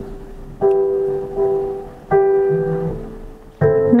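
Slow piano passage from a ballad: a chord struck about every second and a half, each one ringing and fading before the next.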